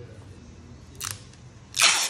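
Clear tape pulled off its roll in two short rips: a brief one about a second in and a louder, longer one near the end.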